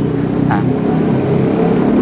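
Motor vehicle engine running close by on the street, a steady low drone that grows slowly louder.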